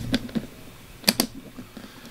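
Metal latches on a hard clamshell typewriter case being unfastened: a few light clicks, then two sharp clicks close together about a second in.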